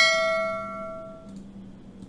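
A single bell ding, a notification-style sound effect: one struck, bell-like tone that rings and fades out over about a second and a half.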